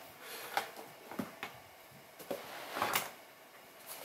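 Small cardboard box being handled and opened by hand: soft rubbing and scraping of the card flaps, with a few light clicks and a louder scrape about three seconds in.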